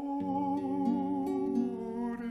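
Slow instrumental music: a violin holds a long, gently wavering note over a steady accompaniment, then steps down to a lower note about a second and a half in.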